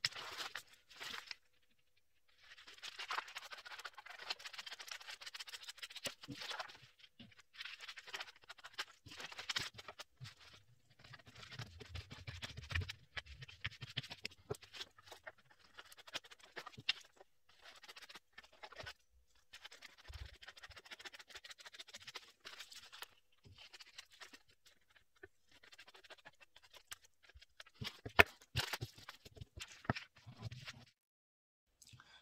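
Scissors cutting through pattern paper: runs of crisp snipping and paper rustle lasting a few seconds each, broken by short pauses, with a sharp click near the end.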